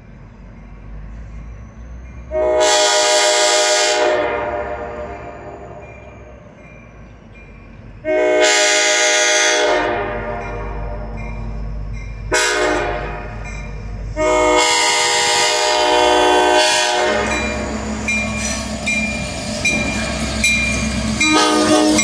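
Diesel freight locomotive's air horn sounding the grade-crossing signal as the train approaches: two long blasts, one short, then a final long blast. After the horn, the locomotive's diesel engine and the train's wheels on the rails grow louder as it reaches the crossing.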